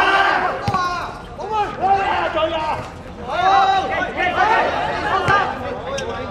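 Several people calling and shouting at once, their voices overlapping, with two sharp thumps of a football being kicked, one about a second in and one near the end.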